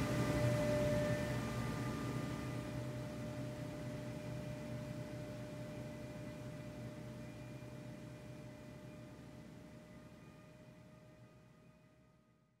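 Soft background music: a sustained drone of a few steady tones over a low hum, fading slowly until it is nearly gone by the end.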